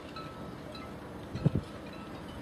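Halyards and rigging on moored sailing boats clinking against metal masts: light, ringing, chime-like tings over a steady wind haze. A low thump comes about one and a half seconds in.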